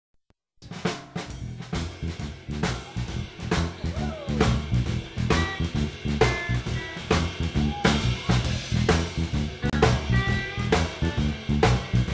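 Live band playing an instrumental rock intro: drum kit keeping a steady beat with snare hits over a bass line and guitar. The music starts about half a second in.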